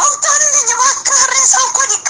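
Music with a high-pitched voice singing in short, gliding phrases that break off every half second or so.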